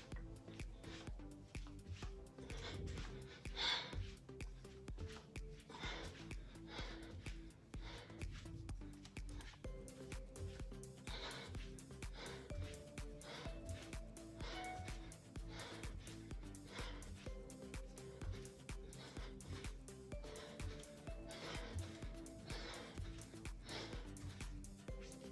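Quiet background music with a steady beat and held notes. Now and then there is a short, sharp breath out, the strongest about four seconds in.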